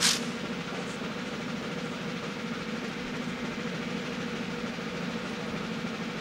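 A single sharp bang right at the start, then a steady hiss with a low hum running underneath.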